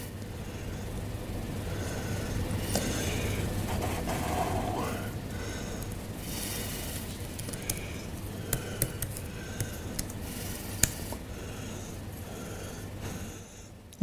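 Steady room noise with a few short, sharp clicks, mostly in the second half: keys being typed on a laptop keyboard to enter and run a command.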